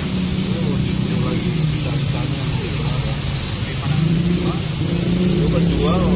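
A motor vehicle's engine running nearby, a steady low hum that grows louder about four seconds in.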